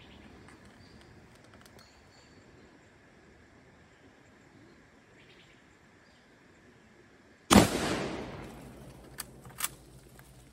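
A single rifle shot from a 1943 Mosin-Nagant 91/30 bolt-action rifle (7.62×54mmR), a sharp crack about three-quarters of the way in whose tail dies away over about a second. Two short metallic clicks follow, as the bolt is worked.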